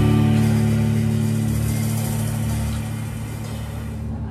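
Final chord of an instrumental band ringing out and slowly fading: Telecaster electric guitar, upright bass and drum kit with a cymbal crash decaying.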